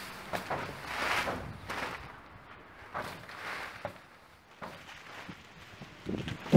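Intermittent swishes, splats and rustles as wet white material and mud are thrown and smeared onto boards, with feet shifting on plastic sheeting.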